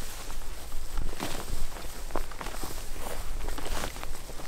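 Footsteps walking through tall dry grass and weeds, the stalks swishing against clothing and gear with each stride, in an irregular walking rhythm.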